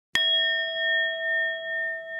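A single struck chime sound effect: one bright ding shortly after the start that rings on, slowly fading with a steady wavering pulse in its tone.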